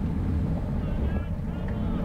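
Steady wind buffeting on the bike-mounted camera's microphone with low road rumble, from a road bike racing at about 23 mph in a pack.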